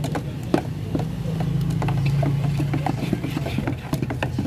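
Two metal gallon cans of epoxy enamel being stirred by hand with flat sticks, the sticks giving irregular knocks and clicks against the can walls. Under it runs a low engine-like hum that grows louder for a couple of seconds in the middle.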